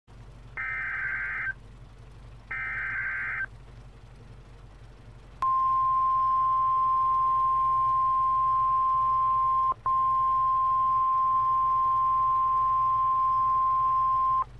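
NOAA Weather Radio emergency alert: two one-second bursts of buzzy SAME digital header data, then the 1050 Hz warning alarm tone, one steady high tone with a brief break about ten seconds in, signalling that a warning is about to be read.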